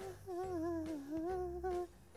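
A person humming a slow, wavering tune with closed lips, breaking off shortly before the end.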